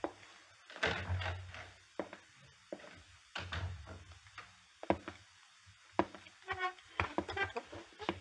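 Radio-drama sound effects of a door and a run of separate knocks and thuds, with a brief pitched squeak about six and a half seconds in.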